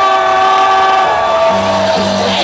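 Electronic dance music played live over a festival main-stage sound system: a long held note over a sustained chord, with a deep bass note coming in about one and a half seconds in.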